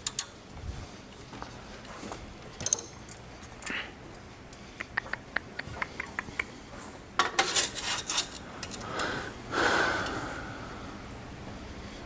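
Light metallic clinks and handling noises from exhaust parts and tools being worked on, with a quick run of small ticks about five seconds in and two longer rustling noises near the end.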